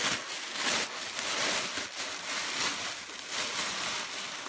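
Tissue paper rustling and crinkling irregularly as hands dig through it in a gift box.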